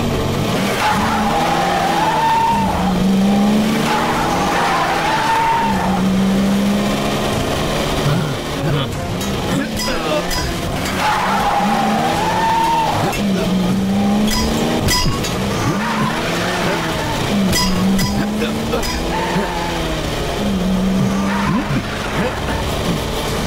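Mercedes-Benz saloon's engine revving hard in repeated surges, about every three to four seconds, with the wheels spinning and squealing on dry dirt: the car is bogged down and not moving off.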